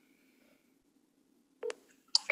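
A phone on speakerphone, mostly quiet with a faint thin tone at first, then one short electronic beep about one and a half seconds in.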